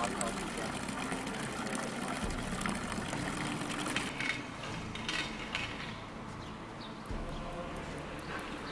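Water pouring steadily from a stone fountain spout, with voices in the background. About four seconds in the water sound ends, leaving quieter outdoor ambience with a few faint clicks.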